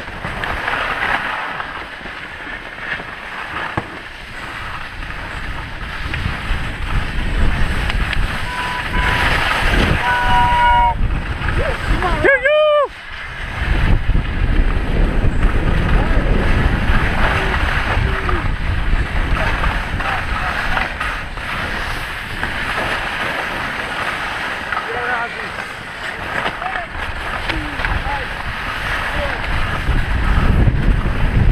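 Skis and a rescue toboggan hissing and scraping over packed snow at speed, with wind buffeting the microphone and growing stronger after the middle. A couple of brief shouted calls come about ten and twelve seconds in.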